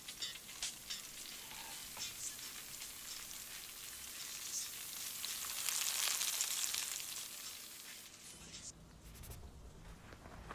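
A frying pan of fried breakfast (eggs, bacon, mushrooms and cherry tomatoes) sizzling in hot fat, with scattered crackles and pops. The sizzle swells to its loudest about six seconds in as the pan comes close, then dies away near the end.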